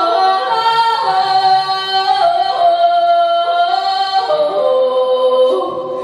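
A young woman singing a Ukrainian folk song in the open-throated folk vocal style, holding long notes that step up and down in pitch.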